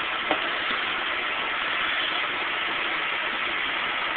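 Steady hiss of room and recording noise, with one faint tick about a third of a second in.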